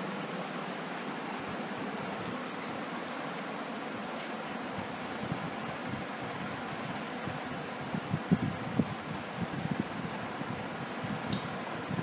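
Steady room noise, an even fan-like hiss, with a few soft low thumps or bumps in the second half.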